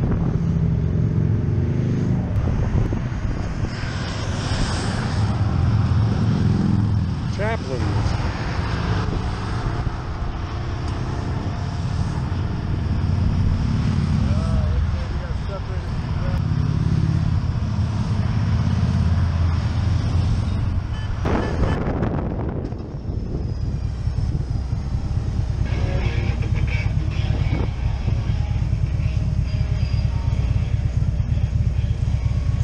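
Motorcycles and three-wheeled trikes passing along the highway below, their engines swelling and fading as they go by, with wind on the microphone. About 22 seconds in the sound switches to a cruiser motorcycle's engine running under the rider in slow traffic.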